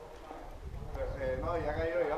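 Footsteps on loose gravel and rubble, with a distant man's voice calling from about a second in.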